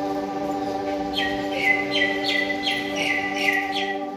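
Ambient background music with sustained drone-like tones, over which a bird gives a run of about six short, quick descending chirps from about a second in until near the end.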